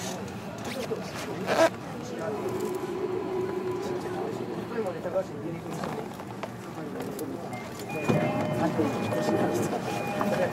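Inside a stopped 305 series electric train with its doors open: passengers talking, against a station's background noise, with a sharp knock early on. A set of steady electronic tones starts about eight seconds in, just before the door-closing announcement.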